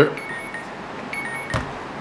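Spoon and plastic peanut butter jar being handled as peanut butter is scooped out, with one sharp click about one and a half seconds in. Two faint short high tones come before the click.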